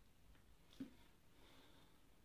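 Near silence: room tone, with one faint, short sound a little under a second in.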